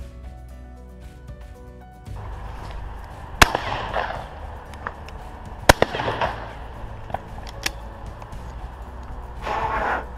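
Two 12-gauge shotgun shots from a Beretta Silver Pigeon over-and-under, about two seconds apart, each a sharp crack with a short echo.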